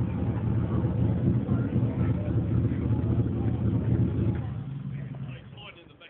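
Lifted off-road 4x4's engine running steadily at low revs as the vehicle is driven, fading away over the last second or so.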